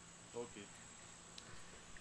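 Near silence with a faint, steady high-pitched whine, broken once about a third of a second in by a brief, faint voice.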